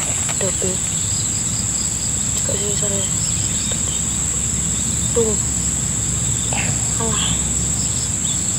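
Insects droning steadily at one high pitch over a low background rumble, with a few faint short calls scattered through.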